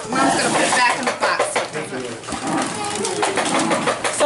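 Christmas wrapping paper being torn and crinkled off a present in quick, crackly rips, with people talking over it.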